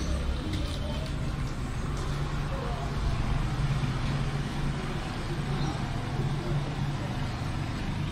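Steady low rumble with indistinct voices in the background.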